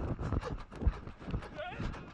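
A spectator shouting encouragement ('come on') as a rugby player breaks away, over irregular low thumps on the microphone in the first second.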